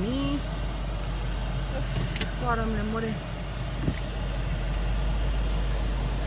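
A car's steady low rumble heard from inside the cabin.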